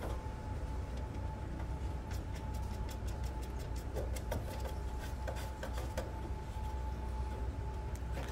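Light scattered clicks and ticks of a gas grill's push-button igniter retaining nut being threaded on by hand against the control panel, over a faint steady thin tone and low background rumble.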